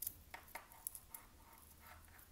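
Faint scratches and small clicks of fingers picking at and pulling back the wire shield of a stripped USB cable, several short ticks spread through the moment.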